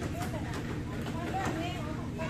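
Children's voices chattering faintly, over a steady low background hum.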